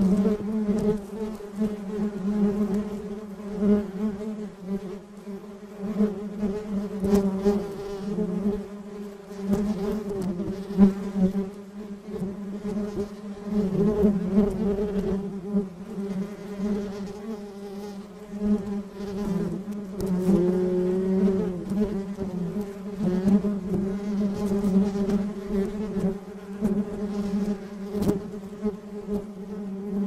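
A honeybee colony buzzing on the comb: a steady, many-winged hum with its pitch near 200 Hz and overtones above, swelling and dipping in loudness.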